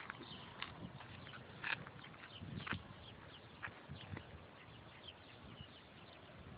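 Faint footsteps on pavement and scattered light taps and clicks over a quiet outdoor background.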